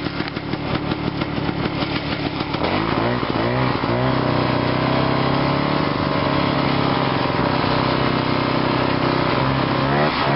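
1969 Ski-Doo Olympic 320's single-cylinder Rotax two-stroke engine, running rough and uneven at low speed at first. Its revs swing up and down about three seconds in, then it settles to a steady pitch at travelling speed as the snowmobile rides the trail.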